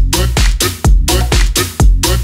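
Minimal tech house music: a steady four-on-the-floor kick drum, a little over two beats a second, under a short repeating pitched riff.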